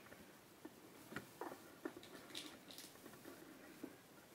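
Faint handling noise from a handheld phone camera: a few soft clicks through the first half and two brief hissy rustles a little past the middle, otherwise near silence.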